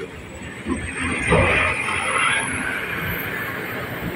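Large truck with a long box trailer driving past close by, its engine rumble and tyre and road noise swelling about a second in, then slowly fading as it moves away.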